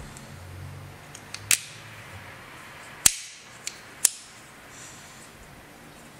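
Sharp metallic clicks from a handmade traditional Abruzzese folding knife, its blade snapping against the tensioned back spring as it is worked: four clicks, the loudest about halfway through.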